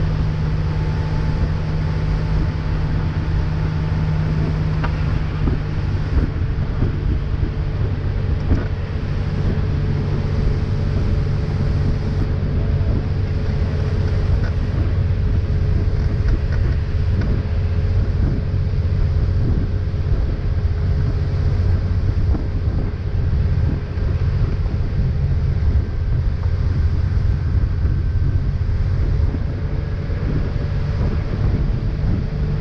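Towing motorboat's engine running steadily at speed, with water rushing in the wake and wind on the microphone.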